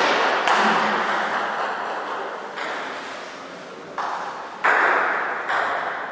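Celluloid-type table tennis ball being struck by rubber-faced bats and bouncing on the table, a handful of sharp, irregularly spaced hits, each with a long echoing tail.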